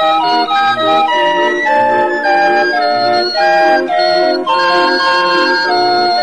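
Chilean organillo, a hand-cranked barrel organ, playing a tune: held pipe notes moving in a melody over a bass note beating about twice a second.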